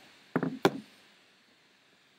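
A quick cluster of four or so sharp taps about half a second in, from keys pressed on a laptop keyboard.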